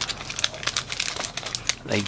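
Wrapped trading card packs crinkling as they are handled and shuffled in the hands: a dense, irregular run of crackles.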